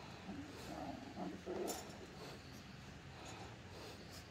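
Cavoodle puppies making a few short, faint vocal sounds in the first two seconds, the loudest at about a second and a half.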